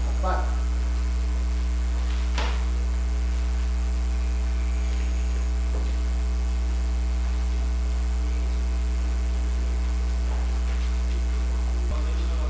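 A steady, low electrical mains hum with a stack of overtones runs through the sound feed, the loudest thing present. A faint brief noise comes about two and a half seconds in.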